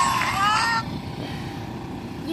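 A child's long, high vocal cry with a smoothly gliding pitch that cuts off suddenly under a second in, leaving a steady low outdoor background rumble.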